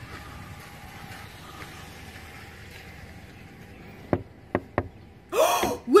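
Three quick, sharp knocks, as on a pickup truck's side window, followed near the end by a loud gasp.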